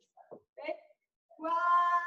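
A person's voice: a couple of short vocal sounds, then one long drawn-out call held on a single pitch for about a second near the end.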